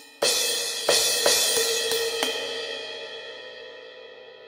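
Sampled suspended cymbals from the Wavesfactory Suspended Cymbals software instrument, set to a dry tone. About five strikes come in quick succession in the first two and a half seconds, then the ring fades away.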